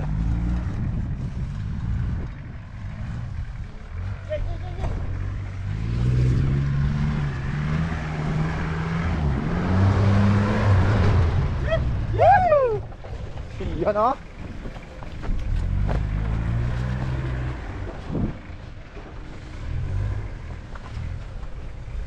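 Mitsubishi Delica Space Gear van's engine revving under load on an off-road course, its pitch rising and falling as the driver works the throttle over dirt mounds. Around the middle a burst of noise comes as the tyres churn through loose dirt. A few short shouts follow.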